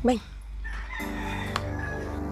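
A rooster crows in the background from about half a second in, and background music with steady low notes comes in about a second in.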